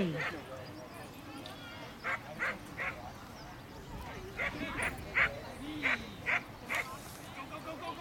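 A dog barking in short, sharp barks: three quick barks a couple of seconds in, then a run of about six more.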